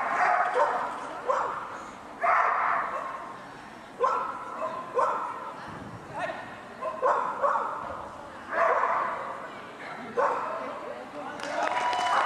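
A dog barking repeatedly in short, sharp barks about once a second, each echoing in a large indoor hall.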